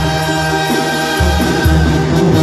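Live Sinaloan banda music: trumpets and trombones hold chords over a tuba bass line, which moves to a new note about halfway through, with a male lead singer's voice.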